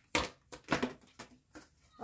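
A large oracle card deck being shuffled by hand: a string of short, sharp card slaps and clicks, several to the second.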